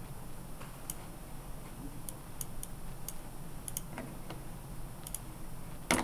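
Computer mouse clicking: about ten short, sharp clicks at uneven intervals, some in quick pairs, over a low steady hum.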